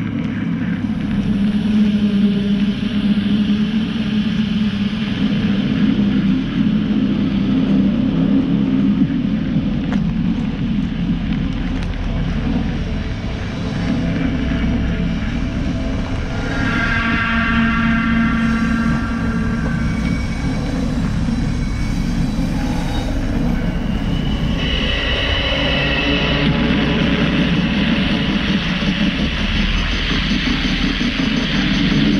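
Steady low rumble of a bicycle riding over a rough, muddy dirt road.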